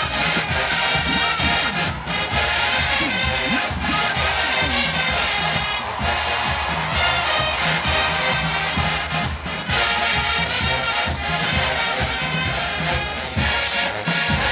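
HBCU show-style marching band playing: brass and drums in a loud, driving tune.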